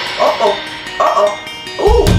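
Three short vocal yelps with bending pitch, sounding in a quiet break of electronic dance music after the heavy bass drops out.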